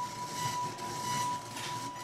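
A 1 kHz test tone played through an Audio Source SS Six surround processor's left channel and heard over a stereo receiver. It is steady and covered by scratchy static. The static comes from a dirty volume control pot that needs contact cleaner.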